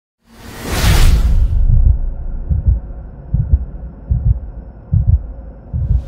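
Channel-intro sound effect: a whoosh swelling and fading over the first second and a half above a deep bass rumble, then a series of low bass thumps about once a second, like a slow heartbeat.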